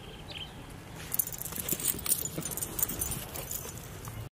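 Metal tags on a small dog's collar or harness jingling quickly as the dog runs, starting about a second in and continuing throughout.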